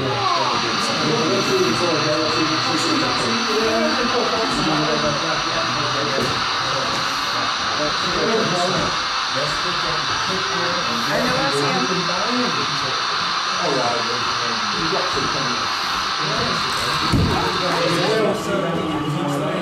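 Indistinct crowd chatter with a steady high hum or hiss over it.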